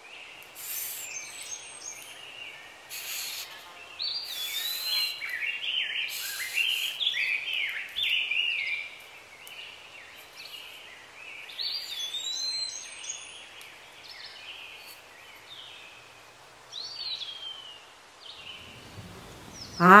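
Birds singing, many short chirps and whistled notes that rise and fall quickly, busiest about four to eight seconds in and again in the second half. A few short hissy scratches are heard among them.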